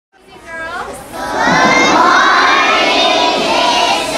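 A crowd of children shouting and cheering, a few voices at first, then swelling into a steady loud din after about a second and a half.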